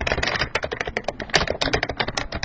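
Fast typing on a computer keyboard: a quick, dense run of keystrokes.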